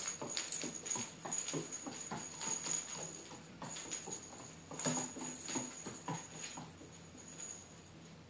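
Small bell on a hanging plush toy jingling almost continuously as a Shetland Sheepdog puppy bats and tugs at it, with a short pause about halfway. Over the bell come quick clicks and knocks of the puppy's claws and the swinging toy on a wooden floor.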